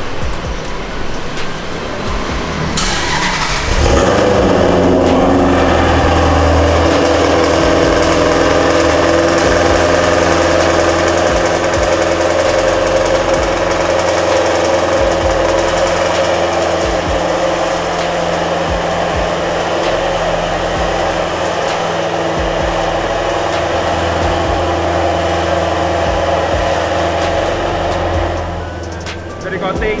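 A Maserati's engine cranks and starts about three seconds in, then idles steadily.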